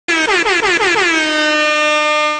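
Air horn sound effect, the kind dropped into hip-hop and radio intros: a rapid string of short blasts, each falling in pitch, running into one long held blast.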